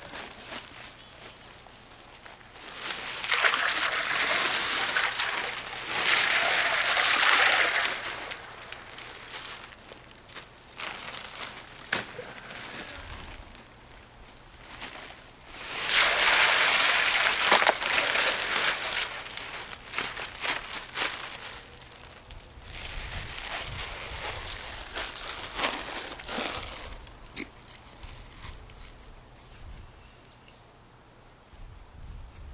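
Bagged ice cubes poured from plastic bags into a water-filled tub, a rushing clatter and splash. There are two long pours, starting about three seconds in and about sixteen seconds in, and a lighter one near the end.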